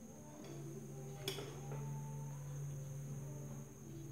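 Quiet room tone: a faint steady low hum, with a single short click about a second in.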